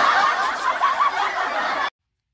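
Students laughing together, cut off abruptly near the end.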